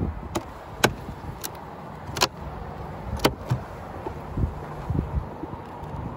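Wooden beehive box being pried loose and lifted off with a metal hive tool: a series of sharp cracks and clicks as it breaks free, then a couple of duller knocks as it is lifted.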